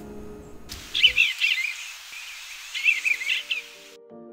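Eastern bluebird singing: two short warbled phrases, one about a second in and another about three seconds in, over a steady outdoor hiss. Soft background music fades out in the first second.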